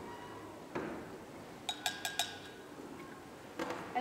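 A spoon clinking against the side of a small glass jug while stirring a liquid mixture. There is a quick run of about four light clinks about two seconds in, with single clinks before and near the end.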